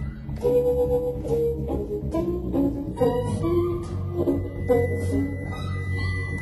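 Electric blues band playing live: bending lead guitar notes over bass and drums.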